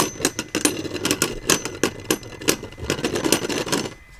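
Two plastic Beyblade Burst spinning tops clashing as they spin together in a plastic stadium: a run of sharp, irregular clicks and clacks.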